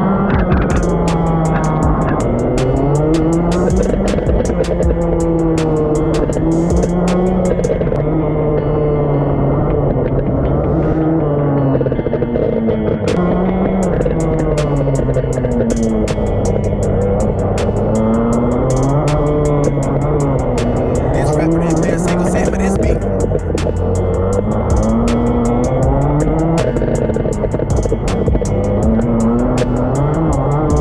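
Rotax Max 125cc single-cylinder two-stroke kart engine heard onboard, its pitch rising and falling again and again as it accelerates down the straights and comes off the throttle for corners. Frequent sharp ticks sound over it.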